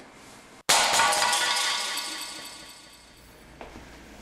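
A clear plastic box shattering on a hard floor: one sudden loud crash a little under a second in, with a bright ringing that fades away over about two seconds.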